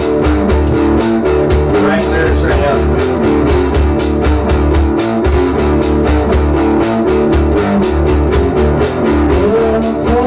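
Rock music with guitar, bass guitar and drums playing at a steady beat, cymbal hits running through it.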